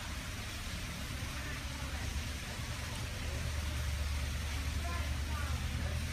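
Faint voices in the background over a steady low rumble.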